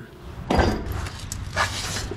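A wheel with a solid tyre being worked off a scissor lift's hub: a sharp metal knock about half a second in, then a scraping clatter as it comes loose.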